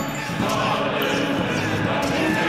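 Soundtrack mix of indistinct voices over low thumps, with a sharp click about half a second in.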